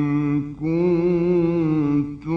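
A man's voice in melodic Quran recitation, holding long drawn-out notes that waver slightly. The voice breaks off briefly about half a second in, then resumes on another held note.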